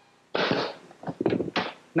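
A short rush of noise, then a quick run of three or four knocks, like wooden workpieces and tools being handled on a workbench.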